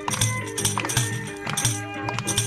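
A hand-held frame drum with metal jingles, like a tambourine, beaten in a quick, steady rhythm with hand clapping, as folk dance music.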